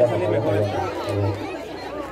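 Indistinct voices of several people chatting at once, over a low steady hum.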